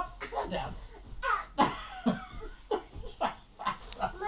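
Laughter in short repeated bursts.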